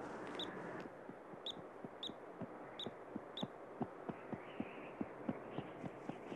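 Faint, irregular soft knocks of a bighorn sheep lamb's hooves stepping on rock, about two or three a second, with a few brief high clicks in the first half.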